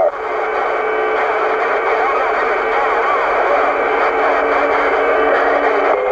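Cobra 148 GTL CB radio's speaker hissing with open-channel static once the other station stops transmitting, with faint steady whistles and a weak, garbled distant voice buried in the noise.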